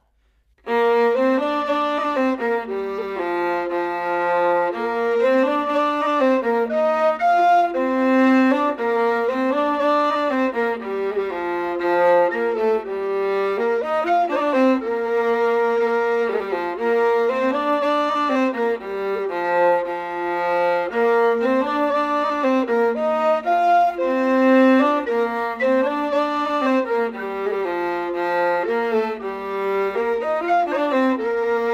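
Fiddle and tin whistle playing an Irish tune together, with the melody starting about a second in after a count-in.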